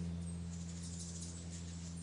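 A steady low hum of room tone in a pause between spoken sentences, with faint high-pitched chirps in the background.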